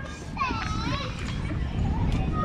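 Children's high-pitched voices calling and shouting during a soccer drill, with one louder rising-and-falling call about half a second in.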